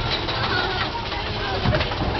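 Mine-train roller coaster running along its track with a steady low rumble, and a few short, high sliding calls over it.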